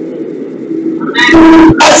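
Low steady hum for about a second, then a man's voice comes in loudly, holding one drawn-out vowel before speaking a word in French.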